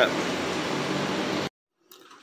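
A machine's steady hum with a hiss over it, which cuts off suddenly about one and a half seconds in, leaving faint room tone.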